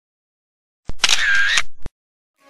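Camera-shutter sound effect added in editing. After silence, there is a sharp click about a second in, then a short burst with a dipping whistle-like tone, then a second click at the end, all within about one second.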